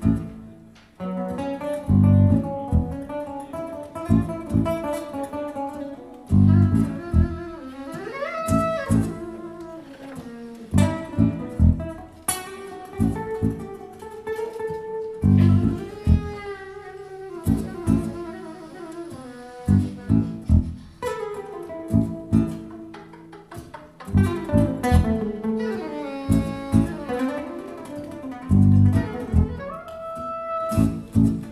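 Live instrumental band music: acoustic guitars playing with a melody line above them, over strong low drum hits in an uneven rhythm.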